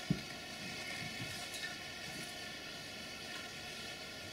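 Quiet room tone picked up through the speaker's microphone and sound system: a steady low hiss and hum, with one brief click just after the start.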